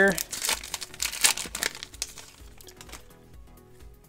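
Foil wrapper of a trading-card pack crinkling and tearing as it is opened by hand, dense crackling for about two seconds that then dies away. Faint background music runs underneath.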